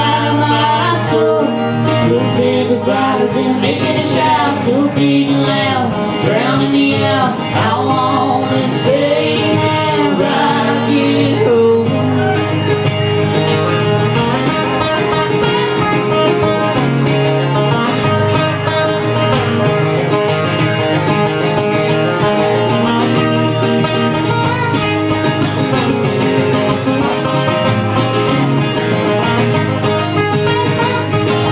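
Live acoustic duo: two acoustic guitars with a man and a woman singing together. About twelve seconds in, the singing stops and an instrumental break on the two guitars follows.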